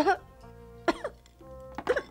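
Background music with steady held notes, over three short vocal sounds from a woman gulping down food, about a second apart, each dropping in pitch.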